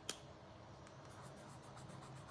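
Faint scratching of a felt-tip pen colouring in squares on notebook paper, with one sharp click just after the start.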